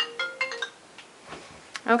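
Phone ringtone playing a melody of short electronic notes, cutting off less than a second in.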